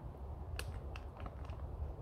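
A few faint clicks and crinkles of a plastic food sachet being squeezed into a steel camping mug, over a low steady rumble.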